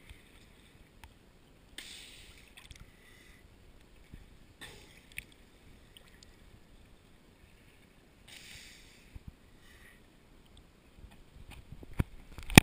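Faint sloshing and lapping of choppy bay water at the surface, right against the camera, with brief splashing surges about two, five and eight seconds in and a few small clicks between.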